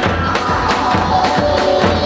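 Wedding dance music: a davul, the large double-headed bass drum, beating a steady dance rhythm under a melody of held notes that step downward in pitch.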